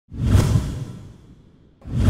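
Two swooshing whoosh sound effects for an on-screen transition. The first swells up at once and fades away over about a second and a half; the second swells up near the end.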